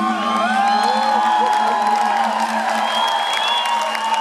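Concert audience cheering, whooping and clapping at the end of a live rock song, while the band's last held chord rings on underneath.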